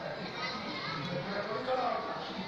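Speech: voices talking, quieter than the sermon around it.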